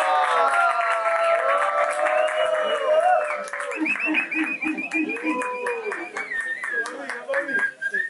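A small crowd of men shouting and whooping together, with scattered hand clapping, cheering the end of a freestyle rap verse. One long high call is held through the second half.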